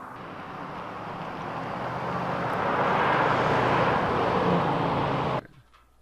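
Vehicle noise: a rushing sound that builds over about three seconds, holds loud, and cuts off suddenly about five seconds in.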